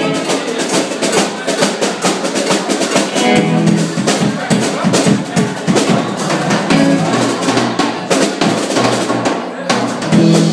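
Live band playing: a drum kit with snare and bass drum hits and an electric guitar, the drums dense and prominent throughout.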